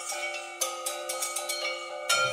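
Intro music: a low steady tone held under struck, ringing bell-like notes, with a new struck chord a little over half a second in.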